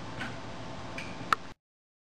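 Faint steady hiss of the recording with a couple of soft clicks, then one sharp click, after which the sound cuts off to silence.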